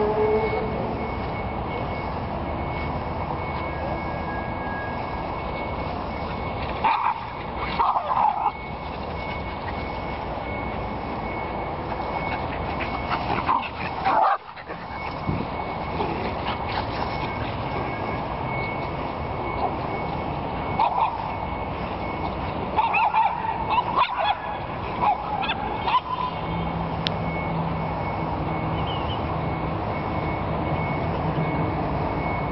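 Miniature schnauzers barking and yipping in short bouts while they run and play, the busiest bout a little past two-thirds of the way through. Under them runs a steady background noise with a thin high tone.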